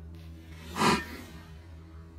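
A tennis racket striking the ball on a slice serve: one brief brushed hit just under a second in, over faint steady background music.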